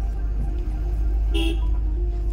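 Strong wind buffeting the microphone, a heavy, steady low rumble. About one and a half seconds in, a brief high toot cuts through.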